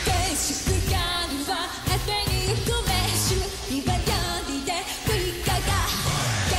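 Live J-pop song: a female lead vocal sung over a loud pop backing track with a steady, pulsing bass beat.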